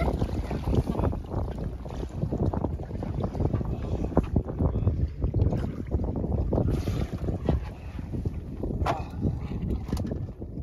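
Wind buffeting the microphone in uneven gusts, a low rumble throughout, with a few brief sharper sounds near the middle and end.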